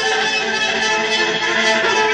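Live ensemble music led by a violin playing sustained notes over plucked strings.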